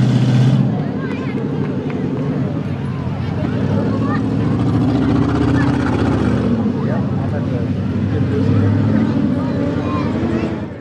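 Demolition derby cars' engines running steadily at low speed, with voices of people around the arena mixed in.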